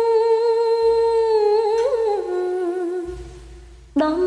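A sung voice in an old-style Khmer song holds one long note. About two seconds in it drops to a lower note and fades away near the end, over soft low backing.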